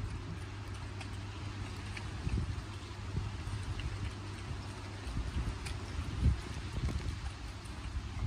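Kunekune piglets chewing and munching food up close, with irregular wet smacks and crunches.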